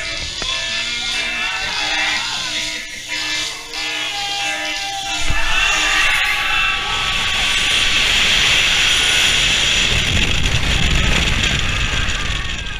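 Themed music plays in the dark launch station of a launched steel roller coaster. About five seconds in the train launches, and a sudden loud rush of wind over the camera, with the train's deep rumble on the track, covers everything and stays loud as it races along at speed.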